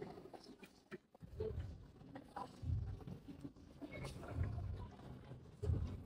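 Faint handling sounds of clothes on hangers being lifted and held up, with a few light clicks and soft low bumps about every second and a half.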